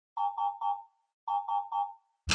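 Electronic ringtone-style chime: three quick beeps of the same pitch, then the same three beeps again about a second later.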